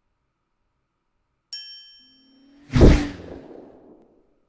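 Logo-reveal sound effects. A bright, bell-like ding rings out about a second and a half in. A low swell then builds into a loud whooshing hit just before three seconds, which fades away.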